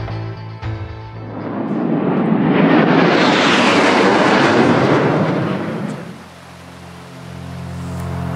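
RAF BAE Hawk jet trainer flying past overhead: the jet noise of its Adour turbofan swells from about a second in, peaks around three to four seconds with a falling pitch, and fades away by six seconds.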